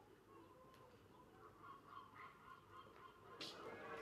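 Near silence with faint, distant bird calls, and a short burst of noise near the end.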